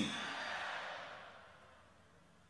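The last falling syllable of a man's call into a microphone, followed by a breathy hiss that fades away over about a second and a half.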